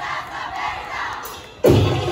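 A group of voices shouting together while the music pauses, fading away, then loud percussion music with wooden knocks cuts back in suddenly about a second and a half in.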